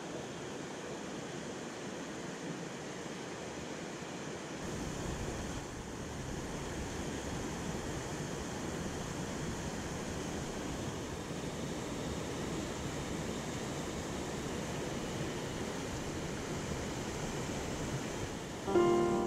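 Steady rush of whitewater from river rapids and a small waterfall, with a deeper low rumble coming in about four and a half seconds in.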